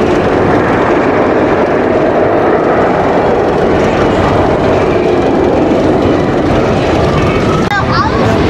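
A wooden roller coaster train running along its track: a loud, steady rumble, with riders' voices rising near the end.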